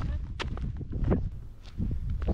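Footsteps on sandstone slickrock: a few scattered short clicks of shoes on rock over a steady low rumble on the microphone.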